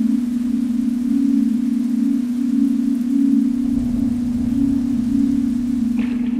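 A steady low electronic tone of about 243 Hz, held without change, over a faint even hiss; no music plays with it.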